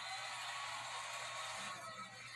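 Game-show studio audience applauding and cheering, heard through a television's speaker in a small room.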